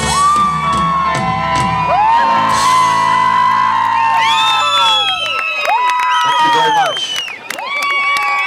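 A live band's song ending: the last chord rings out and the bass stops about two seconds in, while the audience whoops and cheers. Clapping joins in from about halfway.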